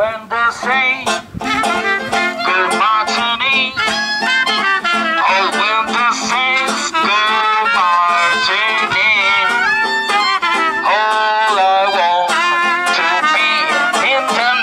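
Lively swing music with a plucked banjo and a wavering lead melody line on top.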